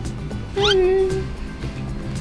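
Background music with a single loud meow about half a second in, a held cry lasting around half a second over the music.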